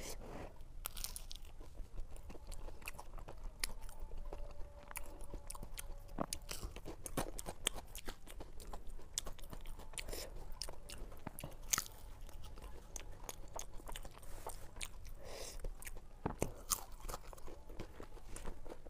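Close-miked crunching and chewing of a crispy deep-fried samosa, with a dense run of sharp crackles and wet mouth sounds throughout, sped up to double speed.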